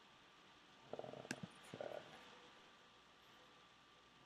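Near silence: faint room tone with a faint steady hum, broken about a second in by a quiet spoken "okay" and a single sharp click.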